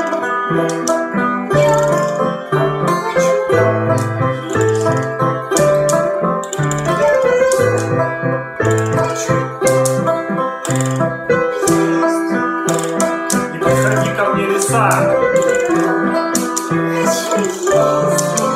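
A banjo being picked, with a keyboard playing chords and a stepping bass line under it, in a continuous ensemble passage.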